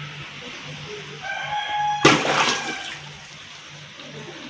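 A loud splash of water in a shallow tank about halfway through, fading within a second, as a giant snakehead strikes at live semah fry fed to it. Just before it, a rooster crows in the background.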